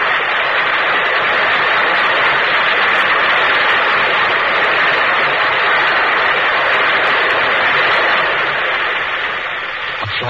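Theatre audience applauding, a dense steady clapping that starts suddenly and thins slightly near the end.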